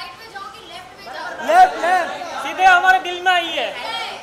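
Speech only: a woman talking in a lively voice, with the chatter of other voices behind her.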